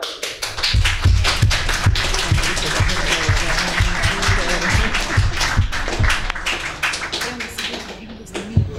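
A roomful of people clapping over rhythmic music: dense claps throughout, with low thumps a few times a second.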